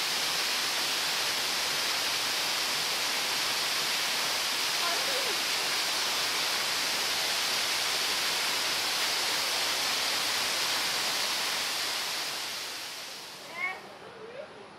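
Waterfall: a steady rush of water falling into a pool, fading out near the end, with a short pitched sound just before it ends.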